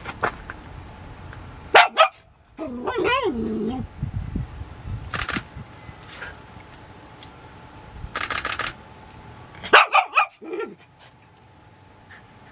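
Dogs barking in several short, sharp bursts, with a longer wavering cry about three seconds in.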